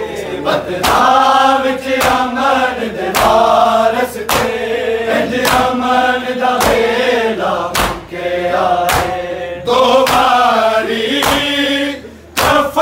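A group of men chanting a Punjabi noha together, with open-hand chest beating (matam) striking in time about once a second.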